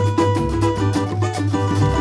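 Samba music with a cavaquinho and percussion playing a steady beat, between sung lines.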